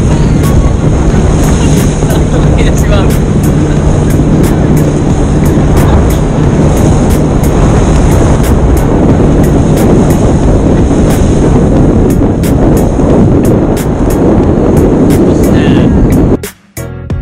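Loud, steady rush of wind and water on an action camera riding a banana boat towed at speed across the sea, with a low steady hum through about the first half and frequent small crackles.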